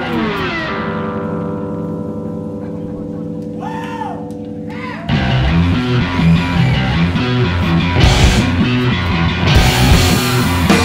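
Live punk rock band: a held electric guitar and bass chord rings on and slowly fades, with a few short bent notes near its end. About halfway through, the full band with drums crashes back in loud and fast.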